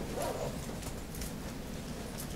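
Faint, distant voice of an audience member speaking away from the microphone, over the steady low hum of a large lecture hall.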